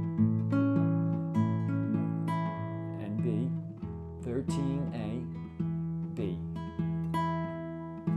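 Nylon-string classical guitar fingerpicked in a steady pattern over an A chord, a low A bass note repeating under plucked treble notes that ring on: the A bars of a 12-bar fingerstyle progression.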